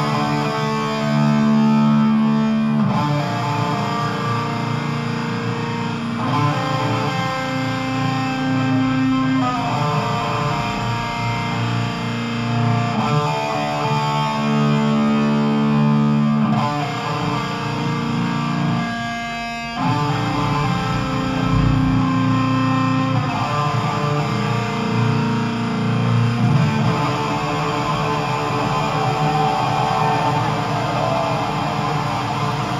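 Metal band playing live, with distorted electric guitars sounding slow, long held chords that change every two to three seconds. This is the opening of a slower, ballad-like song.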